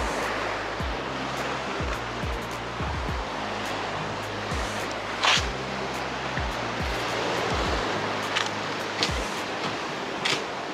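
Sea surf breaking on a rocky shore, a steady rush of water, under background music with a regular low beat. There is one brief sharper sound about five seconds in.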